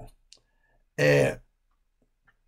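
Conversation pause: one short spoken word or vocal sound about a second in, with a few faint mouth clicks around it.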